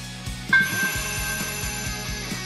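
A bright, bell-like chime sound effect strikes about half a second in and rings on, slowly fading, over soft background music.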